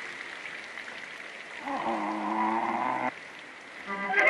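Early sound-film cartoon soundtrack: a hissy lull, then a single held tone of about a second and a half that starts with a short upward slide and cuts off suddenly.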